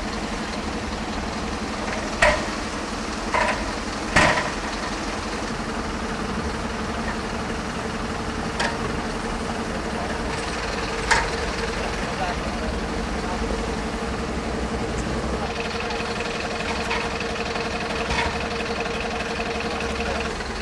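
Fire truck engine idling steadily, with a few sharp knocks in the first half.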